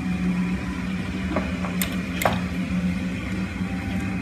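Sewing machine motor humming steadily while the needle is idle, with a few light clicks around the middle as the fabric is handled.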